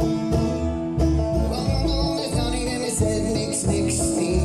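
Live acoustic music: a banjo picking over a plucked upright double bass in a country-bluegrass tune, with a steady low bass pulse.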